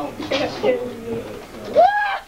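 Children's voices chattering, ending with a pitched "ooh" that rises and falls.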